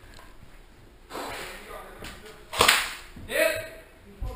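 A sharp crack, the loudest sound, about two and a half seconds in, with a short shout just after it; a brief noisy rush comes about a second in.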